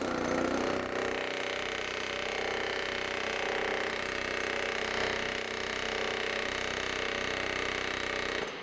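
Pneumatic rivet gun hammering a red-hot rivet into a streetcar's metal frame: a steady, rapid machine-gun hammering with no break.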